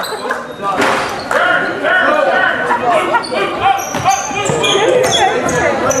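Basketball bouncing on a hardwood gym floor, with short sneaker squeaks and players' and onlookers' voices echoing in a large hall.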